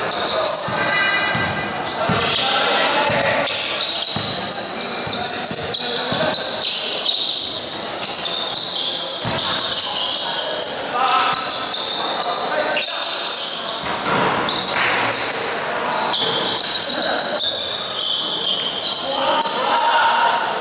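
Basketball game in an echoing gymnasium: the ball bouncing on the court, sneakers squeaking in short high chirps, and players' voices calling out throughout.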